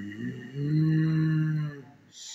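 A man sighing, the sigh running into a long, low moan with his lips closed, held steady at one pitch for over a second and stopping near the end.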